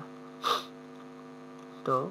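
Steady electrical mains hum on the recording, with a brief breathy sound about half a second in.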